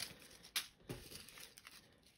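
Small plastic zip-lock bags of resin diamond-painting drills being handled: a few faint, short crinkles, one at the start, one about half a second in and one near one second, with soft rustling between.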